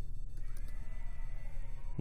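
Steady low hum with a faint wavering tone above it; no clear keystrokes.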